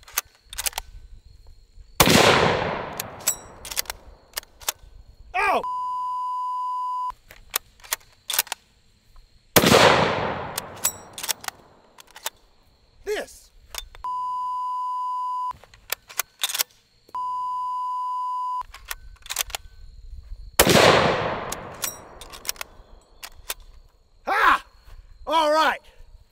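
A CZ 550 bolt-action rifle in .505 Gibbs fired three times, each shot cracking and dying away in a long echo, with sharp clicks between the shots. A steady high censor beep follows the first shot, and two more follow the second.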